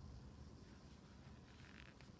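Near silence: quiet room tone with a low hum.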